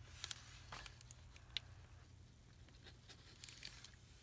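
Near silence: room tone with a low steady hum and a few faint, scattered clicks and taps from handling a liquid glue bottle over paper.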